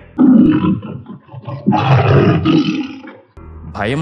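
A tiger roaring twice: a short, rough roar at the start, then a longer one about a second and a half in.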